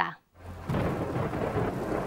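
Steady rain with a low rumble of thunder from a film trailer's soundtrack, fading in after a brief silence.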